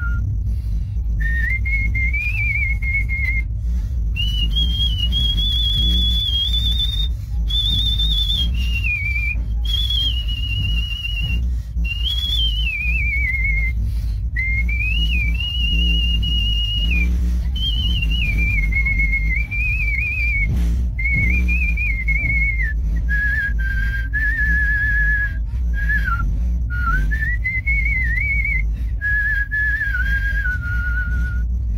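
A man whistling a melody by mouth: a single clear tone moving through held notes and glides in phrases separated by short breaths, reaching its highest notes about a quarter of the way in and settling lower near the end. Underneath runs the steady low rumble of the moving train coach.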